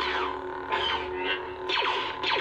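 Lightsaber replica on a Proffie sound board playing the MPP Vader sound font. It gives a steady electric hum, and two swing sounds sweep down in pitch, about a second apart, as the blade is moved.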